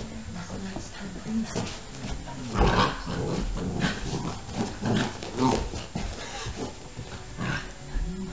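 Chocolate Labrador retriever puppy vocalizing in rough play, in short irregular bursts. The loudest bursts come about two and a half seconds in, with smaller ones later.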